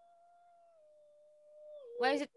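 Faint humming of a single high voice, holding one note and stepping down to a slightly lower one a little under a second in, like a vocal warm-up pattern.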